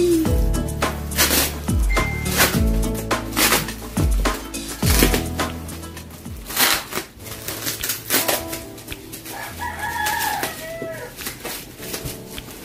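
Plastic mailer and bubble wrap crinkling and rustling in short bursts as a parcel is pulled open by hand. Background music with deep sliding bass notes plays through the first half, and a rooster crows near the end.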